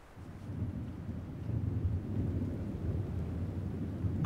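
A low, deep rumble that swells in about half a second in and holds steady, with no clear pitch.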